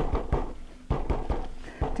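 A fist tapping a soft slab of non-fired clay on a couple of layers of paper on a table, flattening it into a pancake: a quick, uneven run of dull thumps, about three or four a second.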